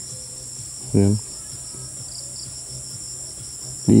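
Steady, high-pitched chorus of insects, several pitches held at once.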